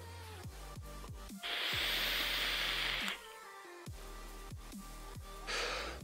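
Breath drawn on an e-cigarette and blown out: an airy hiss lasting under two seconds about a second and a half in, then a softer one near the end.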